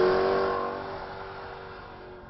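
Range Rover Sport's supercharged 5.0-litre V8 engine running at a steady note, fading away.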